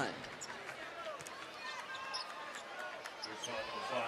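Basketball arena sound during a stoppage in play: crowd chatter and murmur, with a few short knocks and squeaks from the court.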